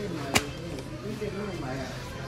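A single sharp click about a third of a second in, over faint talking in the background.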